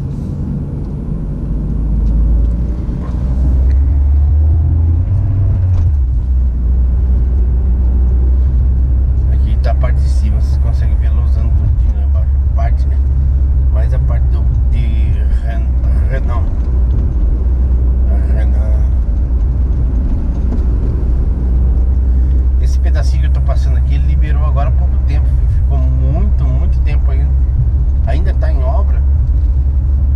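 Car cabin noise: a steady low drone of the engine and tyres on the road, getting louder a few seconds in as the car picks up speed.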